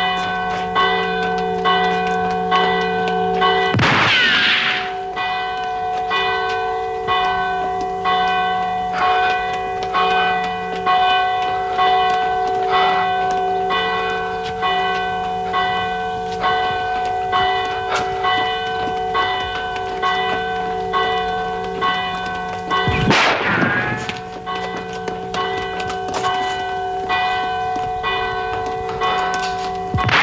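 A church bell rung quickly and repeatedly, about two strokes a second, its tones hanging on between strokes. Two loud gunshots ring out over it, one about four seconds in and another about twenty-three seconds in.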